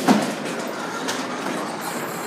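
Steady noise of a busy airport terminal hall while walking in through the entrance doors, with a sharp knock right at the start.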